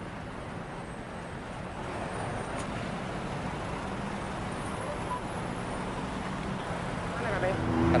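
Steady road traffic noise: the hum of idling and passing car and truck engines with tyre noise, growing slightly louder about two seconds in.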